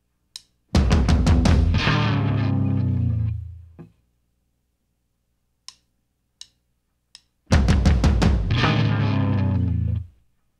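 Rock band of electric guitar, bass and drum kit in the studio. Three sharp clicks count in, then the whole band strikes one loud chord together and lets it ring out for about three seconds. The same count-in and full-band hit come again near the end.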